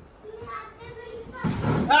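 Faint children's voices, then near the end a woman's disgusted vocal reaction to tasting a sweet made with salt instead of sugar.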